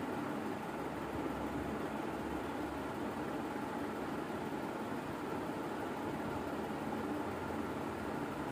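Steady background hum and hiss with no distinct events.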